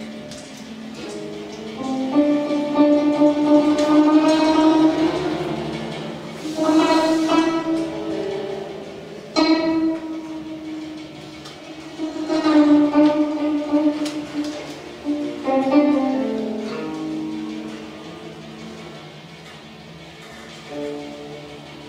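Guzheng (Chinese zheng zither) played in free improvisation: plucked notes and clusters that ring and slowly fade, with new attacks every few seconds. It thins to softer sustained tones near the end.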